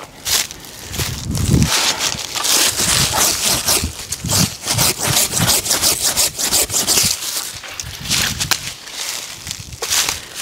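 Silky pruning handsaw cutting through small brush close to the ground, a run of quick back-and-forth strokes lasting several seconds. There are footsteps through grass and brush before and after the cutting.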